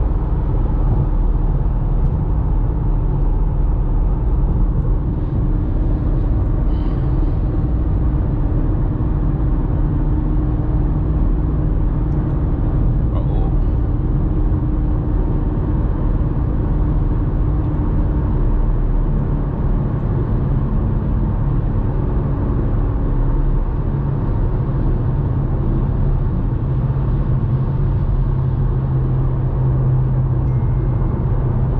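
Inside the cabin of a BMW M5 Competition cruising on the highway: a steady low drone of the twin-turbo V8 with tyre and road noise. The engine note shifts a little about two-thirds of the way through.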